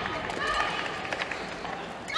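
Indoor sports-hall ambience during a break in play: voices in the hall, with a few faint clicks and short squeaks.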